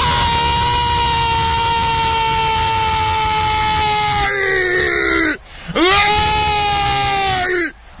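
Radio football commentator's drawn-out goal shout, "Gooool", held on one long, slowly falling note for over five seconds, then a quick breath and a second long held shout. It is the call of a goal just scored from a free kick.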